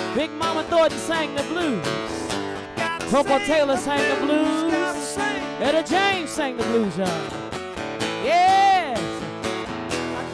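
Live acoustic blues: acoustic guitar and congas playing, with a lead line of sliding, bending notes that waver and swoop throughout.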